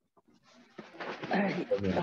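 A video-call participant's microphone coming on about half a second in: background noise and a muffled voice that grow louder just before clear speech begins.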